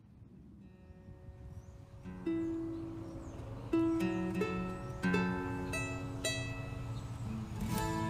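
Acoustic guitar and a small mandolin-like string instrument picking slow single notes that ring on, starting faint about a second in and growing louder, with firmer plucks every second or so from about two seconds in.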